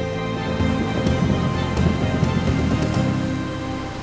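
Waves washing over a sandy beach, a dense rushing and fizzing of water, under soft background music of sustained chords.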